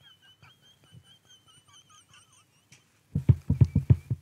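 A man's laughter: near-quiet at first, then about three seconds in a burst of rapid, pulsing laughs, several a second.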